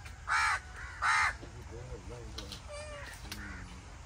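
A bird calls twice with loud, harsh caws, each about a quarter second long and less than a second apart, followed by faint distant voices.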